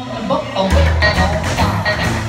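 Live rockabilly band playing: upright bass, snare drum and cymbal, and acoustic and electric guitars, with the full band coming in hard about two-thirds of a second in and keeping a steady beat.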